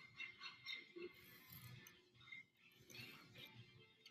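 Near silence, with faint short scratches of a knife scoring thin wood veneer in light, repeated passes.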